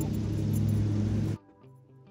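A steady low engine hum over outdoor noise, which cuts off suddenly about a second and a half in. Faint background music with plucked guitar follows.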